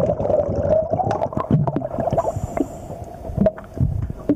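Underwater sound beneath a boat hull: a steady, wavering hum with scattered sharp clicks and bubbling, typical of a scuba diver's breathing regulator and exhaled bubbles heard through the water.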